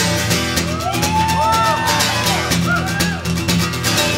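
Live rock band playing an instrumental passage on acoustic guitar, electric guitar, upright bass and drums. The full band comes in all at once at the start, and a lead line of sliding, bent notes runs over a steady beat.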